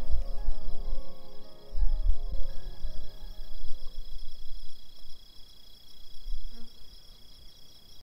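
Slow music with held notes fading out over the first few seconds, leaving a steady high chirring of crickets. A few deep rumbles swell in the low end, the loudest about two seconds in.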